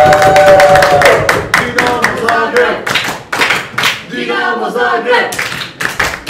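A small audience applauding, with a long drawn-out vocal whoop over the clapping at the start and shorter cheering voices later. The applause dies away at the end.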